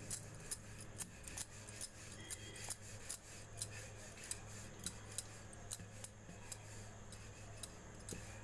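Rhythmic clicking while a roti is rolled out with a wooden rolling pin on a wooden chakla board, about two to three sharp clicks a second as the pin goes back and forth.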